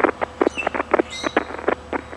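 A rapid, irregular run of sharp clicks, about a dozen in two seconds, with faint bird chirps behind them.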